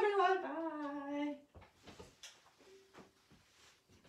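A voice humming a short wordless tune, gliding up and down and ending on a held low note about a second and a half in. Faint knocks and bumps follow.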